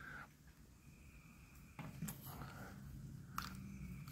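Faint handling noise: a few soft clicks and rustles as a handheld firework gun and a lighter are picked up, over a low steady hum that starts about halfway through.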